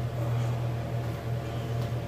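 Steady low electrical hum with a faint, even hiss of room noise.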